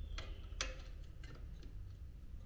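A few light plastic-and-metal clicks as a fan is clipped onto a DeepCool Gammaxx 400 Pro tower CPU heatsink with its wire retention clips, the sharpest click about half a second in.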